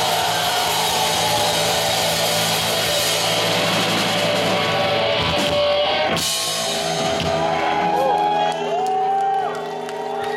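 A rock band playing live, guitars and drums with crowd whoops. About six seconds in, the drums and cymbals stop and held notes and shouting voices carry on, as the song comes to its end.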